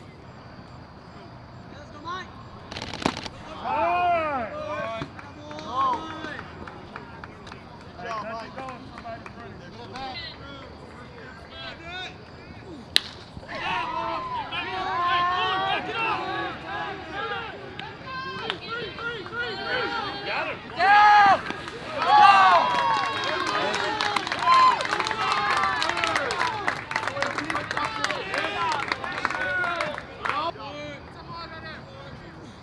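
Spectators shouting on and off, then the sharp crack of a bat hitting the ball a little before halfway. After it, the crowd and players yell and cheer, getting louder and staying loud while the hit goes for an inside-the-park home run.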